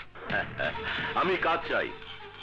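A man's voice over background film music.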